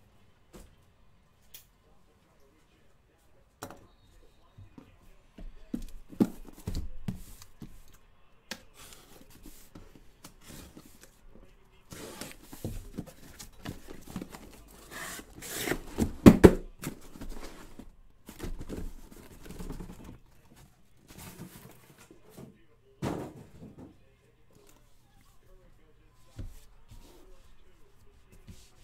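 Cardboard shipping case being handled and unpacked: flaps rubbing and scraping, with knocks as the boxes inside are lifted out and set down. The loudest cluster of knocks comes a little past halfway.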